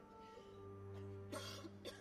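Quiet held orchestral notes over a low sustained tone, broken about one and a half seconds in by two short, sharp sobbing gasps from the soprano.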